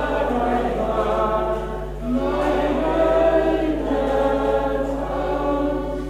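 Men singing a song together to a button accordion, in sung phrases with a short break about two seconds in and another near the end.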